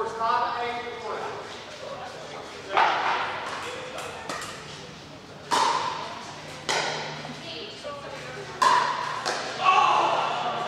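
Pickleball paddles hitting a plastic pickleball during a rally: sharp pops about a second apart, echoing in a large hall. Voices talk at the start.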